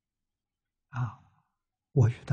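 A man's single short, voiced sigh about a second in, lasting about half a second, between stretches of silence.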